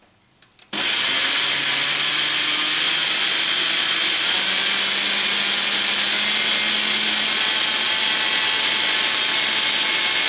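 Countertop jug blender switched on about a second in, its motor running steadily as it blends fruit and milk into a smoothie. The motor's hum steps up in pitch about four seconds in.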